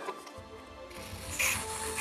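Aerosol spray can with propane propellant giving one hissing burst of about a second and a half, starting about a second in, sprayed onto small hydraulic valve parts to wash them. Background music plays underneath.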